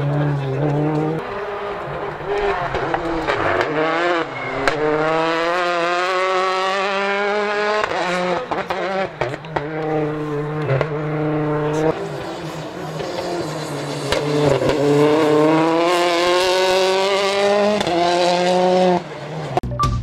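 Rally car engine revving hard as the car accelerates through the gears. The pitch climbs in long rises and drops at each shift, twice over, with short crackles in between.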